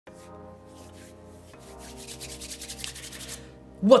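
Hands rubbed briskly together, a fast run of swishing strokes that grows louder from about a second and a half in and stops shortly before a voice begins. Under it is a soft, sustained music chord that changes once.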